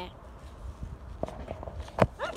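Footsteps and handling of a handheld phone, over a steady low rumble of wind on the microphone, with a few soft knocks in the second half and a sharp knock at the very end.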